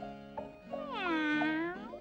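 A cat's single long meow, falling in pitch and rising again at its end, over light music.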